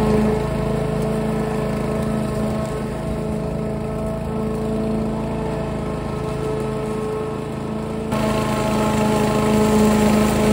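Petrol walk-behind rotary lawn mower engine running steadily under load while cutting grass, a little fainter in the middle and louder again from about eight seconds in.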